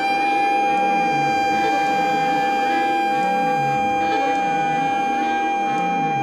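Live improvised band music: a single high note is held dead steady throughout, over a low bass figure that repeats about once a second, with light percussion.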